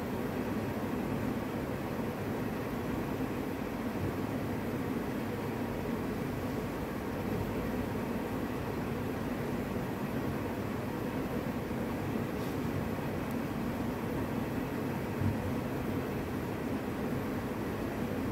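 Steady hiss and low hum of room tone in a large hall, with no singing or speech; a single soft low knock about fifteen seconds in.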